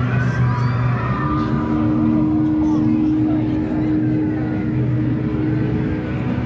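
A steady, loud low drone of two held tones, with people's voices over it.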